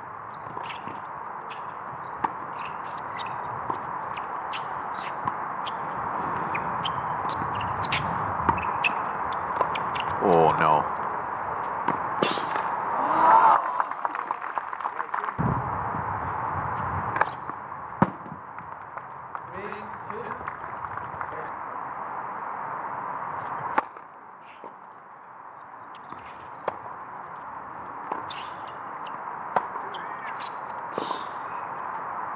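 Tennis ball struck back and forth by rackets during rallies: sharp pocks at uneven intervals over a steady hiss of outdoor court ambience, with a brief falling cry about ten seconds in.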